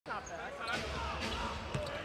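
Basketball game sound from the court: a ball bouncing on the floor during play, with voices.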